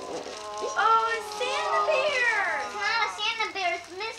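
Young children's voices: high-pitched, excited chatter with no clear words.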